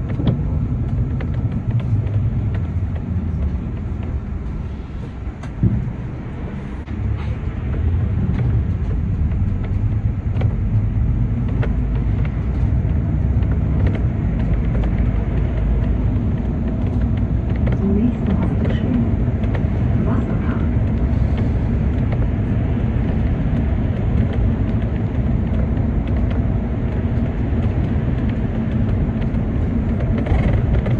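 City bus driving, heard from on board: a steady low drive and road rumble with small rattles and knocks. The rumble dips briefly about five seconds in, with a knock, then holds steady.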